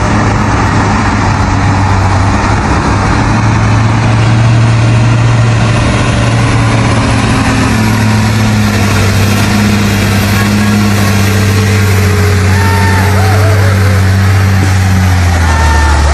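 Heavy diesel truck engine pulling a train of loaded sugarcane trailers: a loud, steady low drone under load, its pitch dropping near the end.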